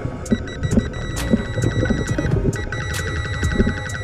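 Muffled underwater rumble with scattered sharp clicks, heard from a submerged camera, joined about a third of a second in by a high electronic tone that pulses very rapidly, like a ringing telephone.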